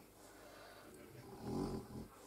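A sleeping pet giving one short, low snore near the end.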